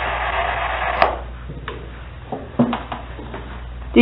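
Steady static hiss that cuts off with a click about a second in, followed by a few short clicks and knocks of a device being handled.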